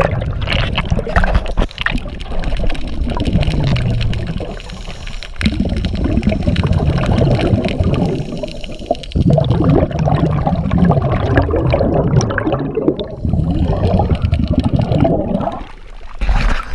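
Diver's exhaled air bubbling from the regulator, heard underwater: long gurgling spells of bubbles, broken by short pauses for breath about five and nine seconds in.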